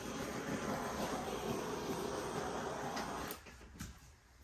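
Handheld butane torch flame hissing steadily as it is played over the surface of freshly poured wet acrylic paint. It cuts off about three seconds in.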